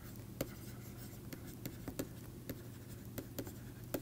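Stylus tapping and scratching on a pen tablet during handwriting: faint, irregular little clicks, a few a second, over a low steady hum.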